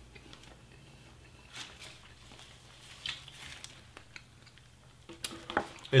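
Faint wet chewing of a mouthful of sweet-style spaghetti, with scattered soft mouth smacks and a small cluster of them near the end.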